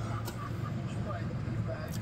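A steady low hum with faint background voices.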